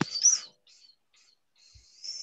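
A bird chirping: a short high note that rises and falls right after a sharp click at the very start, then a longer high note near the end.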